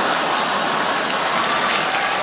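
Audience applauding and laughing, a steady wash of clapping.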